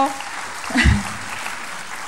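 Audience applauding, a steady clatter of clapping, with a short voice sound from the speaker about a second in.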